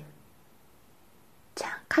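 A woman's voice pausing between sentences: the tail of a word, a short stretch of faint room tone, then a breathy intake of breath near the end just before she speaks again.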